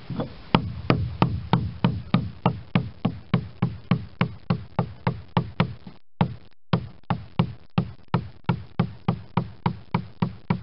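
Caulker's mallet striking a caulking iron in a steady rhythm, about three blows a second, driving fibre into the seam between the pine planks of a wooden boat hull. There is a brief break about six seconds in.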